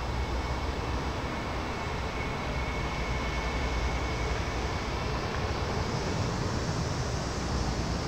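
Steady outdoor background noise, a low rumble under a hiss, with a faint thin high tone for a few seconds in the middle.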